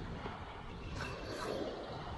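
Steady low rumble of wind and breaking surf, with no distinct event.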